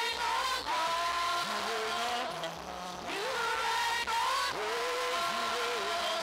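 Live worship singing through a church sound system: voices holding long notes and sliding between them, over steady low accompaniment.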